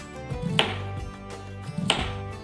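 Background music with two sharp knife strokes, a kitchen knife slicing through a peeled vegetable and striking a wooden cutting board: one about half a second in and one near the end.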